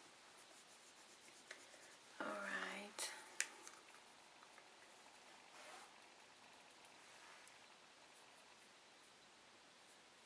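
Near silence broken by a short hummed or murmured voice sound about two seconds in, followed at once by two sharp clicks, the second the loudest thing heard. A faint rustle follows a couple of seconds later.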